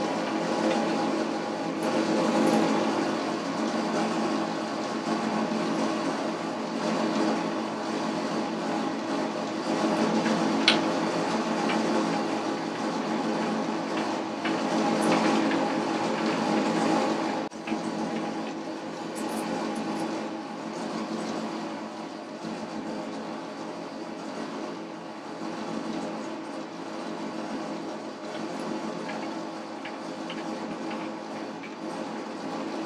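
Boxford metal lathe running under power, its gear train and lead screw driving the carriage while a single-point boring tool screw-cuts an internal thread in a brass nut; a steady mechanical whine and rattle. There is a sharp click about ten seconds in, and the machine noise drops and eases a little after about seventeen seconds.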